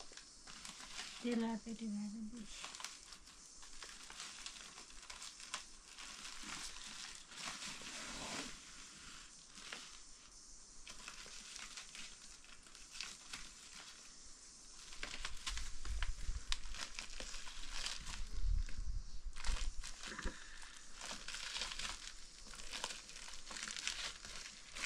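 A woven plastic sack rustling and crinkling as it is handled and packed, with irregular crackles. The handling grows louder in the second half, with dull thumps.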